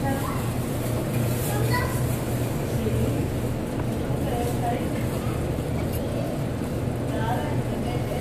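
Indoor crowd ambience: distant voices chattering over a steady low hum.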